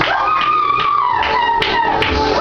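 Live gospel band music: a high, wailing sustained note slides slowly down and then swoops sharply lower, the figure repeating about every two seconds, over a steady drum beat.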